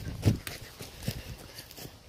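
Irregular knocks and rustles from a phone being handled while its holder moves on foot, with footsteps, the sounds thinning out toward the end.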